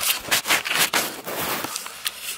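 Handling noise on the camera's microphone: a quick, irregular run of scratchy rustles and scrapes as the camera is moved about and clothing brushes against it.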